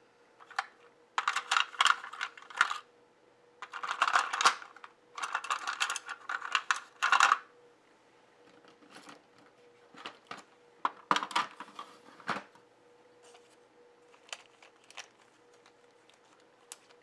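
Pens rattling and clattering inside a clear plastic pen case as it is picked up and rummaged through: several dense bursts of clicking in the first half, then scattered single clicks.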